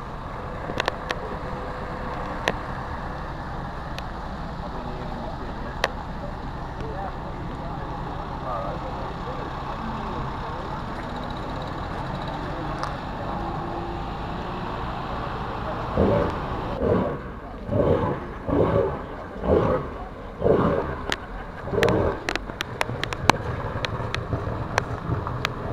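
A vehicle engine idling steadily under a murmur of people's voices, with scattered clicks. About two-thirds of the way through comes a run of about eight loud bursts, roughly one every three-quarters of a second, lasting some six seconds.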